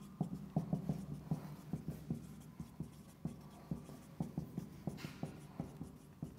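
Marker pen writing on a whiteboard: a faint run of short, irregular strokes and taps as a line of an equation is written out.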